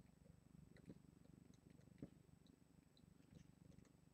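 Near silence: room tone with a faint low rumble and a few faint ticks.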